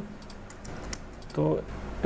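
A few scattered clicks of computer keyboard keys being pressed while editing code.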